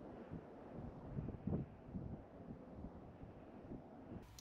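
Wind buffeting the camera microphone in uneven gusts, a low rumble that peaks about a second and a half in.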